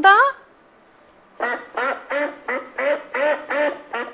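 Recorded duck quacking, played back: a run of about eight quacks at roughly three a second, starting a little over a second in.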